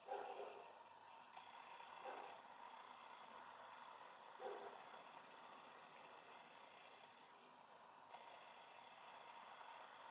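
Near silence: faint room tone with three brief, faint sounds, about two seconds apart, in the first half.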